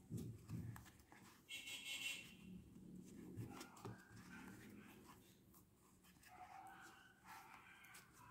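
Near silence: quiet room tone with faint soft ticks and rustles of a metal crochet hook and wool yarn being worked through an EVA foam sole.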